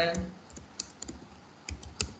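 Typing on a computer keyboard: a run of separate key clicks that end with the Enter key running the command.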